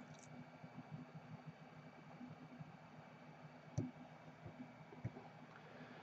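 Faint, light clicks and ticks of metal tweezers handling a tiny replacement microphone on a phone circuit board, over a low steady hum; one slightly louder click comes a little before four seconds in.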